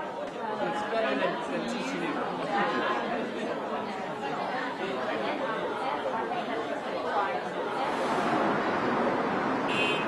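Indistinct chatter of many voices talking at once, a crowd murmur with no single clear speaker, growing denser near the end.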